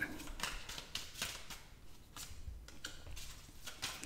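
Tarot cards being handled: drawn off the deck, slid and laid down on the table, giving faint, irregular card clicks and taps.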